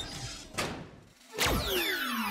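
Cartoon sound effects: a sharp thud at the start, a short whoosh about half a second in, then a louder whoosh about one and a half seconds in, followed by falling whistle-like glides.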